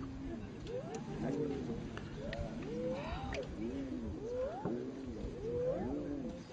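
Spotted hyenas whooping: a run of rising, pitched calls about one a second, some overlapping. The call is taken by the onlookers as a call for help.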